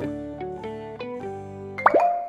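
Cheerful children's background music made of short plucked, guitar-like notes. Just before the end, a quick rising-pitch sound effect marks the change to the next flashcard.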